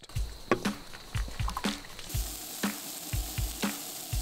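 Sausage patties sizzling on a camp-stove griddle, the sizzle coming in about two seconds in, over background music with a steady beat.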